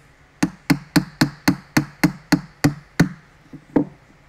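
Small ball-peen hammer tapping a wooden dowel into a wooden block: a quick, even run of about a dozen light taps, about four a second, then a short pause and one more tap near the end.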